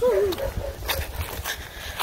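A small pet animal's short cry at the very start, rising then falling in pitch, followed by a couple of fainter calls.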